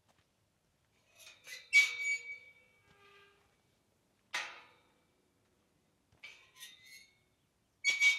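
Tubular steel field gate being unlatched and opened: a few sharp metal clicks and clanks, the loudest about two seconds in with a brief ringing tone, another a little after four seconds, and a cluster of lighter clicks near the end.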